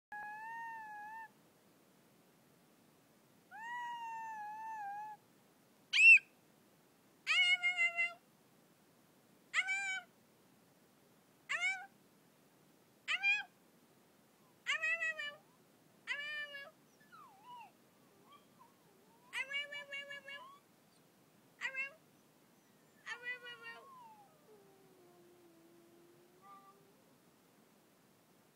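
A person's high-pitched screaming in a string of short wavering cries, the loudest a sharp shriek about six seconds in. Near the end a small dog starts to howl in a lower voice, set off by the screaming, which it hates.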